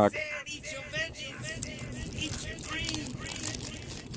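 Paper wrapper of a 1991 Score football card pack being peeled and torn open by hand, crinkling. A faint series of short rising-and-falling pitched sounds runs underneath.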